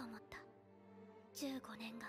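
A girl's voice speaking Japanese in two short phrases, one at the start and one about a second and a half in, over quiet background music with held notes.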